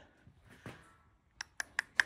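A few light, sharp clicks about a fifth of a second apart, starting about one and a half seconds in.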